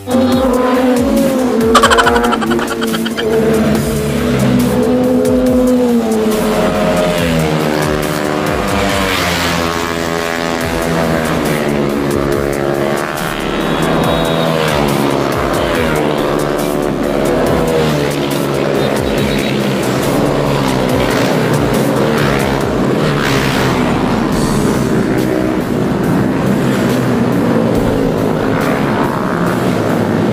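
Motorcycle engines revving hard and accelerating, their pitch climbing and dropping in steps through gear changes, loudest about two seconds in.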